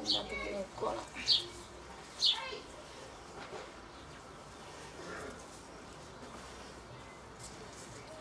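Birds calling: three sharp, falling chirps about a second apart in the first few seconds, then quieter, fainter calls.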